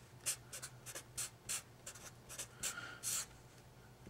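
Sharpie marker writing on paper, a faint string of short scratchy strokes.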